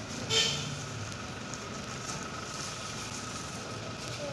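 Steady low hum of street traffic, with a brief rustle near the start.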